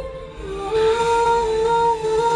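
A woman's wordless singing voice holds long, steady notes over film score. A short dip in the line is followed by a new note about two-thirds of a second in, held through the rest.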